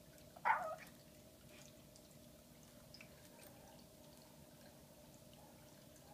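A Shiba Inu puppy makes one brief vocal sound about half a second in.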